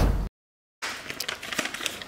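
Music breaks off about a quarter-second in, and after a short dead gap a cardboard crayon box is opened by hand: its tuck flap makes small, irregular crinkling and scraping rustles.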